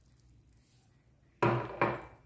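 Two sharp knocks about half a second apart, after a quiet first second and a half: a glass measuring cup being set down on a hard surface.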